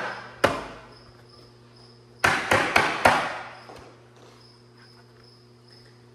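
Hard plastic containers knocking and clattering as they are handled: one sharp knock about half a second in, then a quick run of about four knocks about two seconds in, each trailing off briefly.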